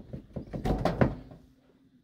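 A four-prong dryer power cord plug being worked loose and pulled out of its wall receptacle: a quick run of scraping clicks and knocks in the first second, the loudest just before it ends.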